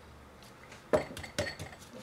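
Three sharp clinks of a table pepper shaker being handled over a cutting board, about a second in, the first the loudest.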